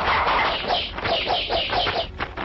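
Chickens squawking and clucking. The second half carries a quick run of short, repeated calls, about five a second.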